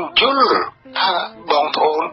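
Speech only: a man talking steadily, with one drawn-out, rising-then-falling vocal sound shortly after the start.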